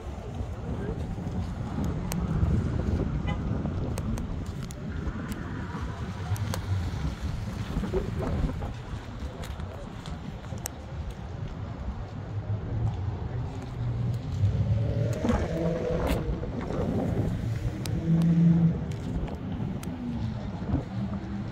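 A muscle car's V8 engine idling with a low rumble, with voices around it.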